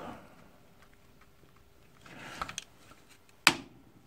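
Hands handling angle-grinder parts, with faint rustling and small ticks, then one sharp click about three and a half seconds in as a part is pushed into place on the motor housing.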